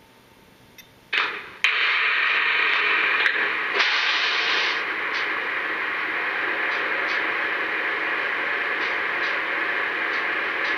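Lionel GE Evolution Hybrid model locomotive's onboard sound system starting up: a click, two sharp bursts about a second in, then a steady recorded diesel-locomotive running sound from the model's small speaker, somewhat louder for the first few seconds.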